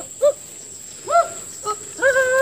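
Short wordless vocal calls from men, three brief 'uh'-like sounds that rise and fall in pitch, the loudest a little past the middle.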